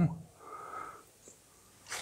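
A person breathing in a pause of conversation: a faint breath about half a second in, then a short, sharp intake of breath near the end.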